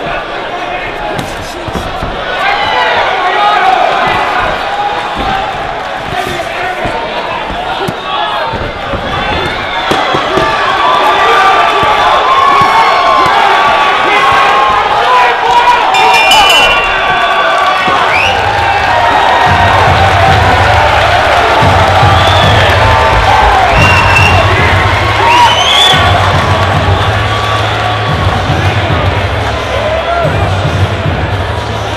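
Boxing crowd shouting and cheering, many voices overlapping. Past the middle, music with a steady bass beat comes in under the crowd.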